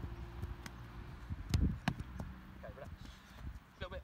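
A football being served and caught in goalkeeper training: a few dull knocks of the ball, the two sharpest close together about halfway through, over wind rumbling on the microphone.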